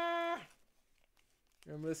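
A man's long, steady cry of "aah", exasperated at a cardboard box that won't open, held until about half a second in. A quiet gap with a few faint clicks follows, and then he starts talking near the end.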